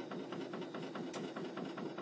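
Faint, steady machine noise of an SMG PlanoMatic P928 track paver driving on its tracks.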